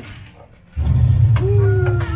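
Explosion sound effect from an interactive attraction's speakers: a sudden loud, low rumble starting under a second in as the projected dynamite blows, with a long falling tone over it.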